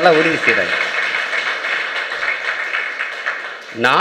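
Audience applauding: a steady patter of clapping that follows the end of a sentence and fades just before the man's speech resumes near the end.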